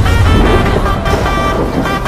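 Dramatic trailer score: a deep low boom hits right at the start under sustained, held musical chords.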